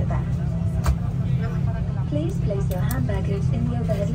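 Steady low hum of an Airbus A330 cabin, with voices talking over it and a couple of brief clicks.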